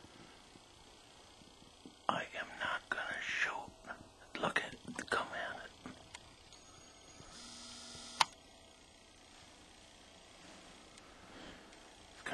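A man whispering in two short spells, then a brief steady whirr that ends in one sharp click about eight seconds in.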